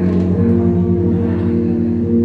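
Live amplified music: an electric guitar and band holding low, steady chords, with no singing.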